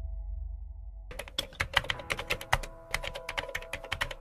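Keyboard-typing sound effect: a rapid run of clicking keystrokes starting about a second in, over a low drone and steady music tones.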